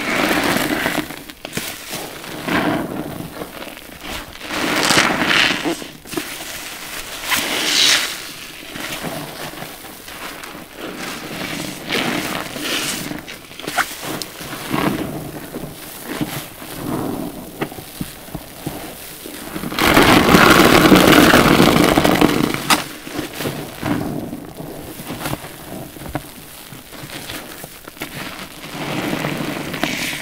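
Large porous sponges squeezed and kneaded by hand in a basin of foamy laundry-detergent water: wet squelching with crackling foam and dripping, splashing water, coming in irregular squeezes. The loudest and longest squeeze comes about twenty seconds in and lasts two to three seconds.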